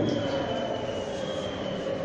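Steady background hiss and hum with a faint, thin high whine held throughout.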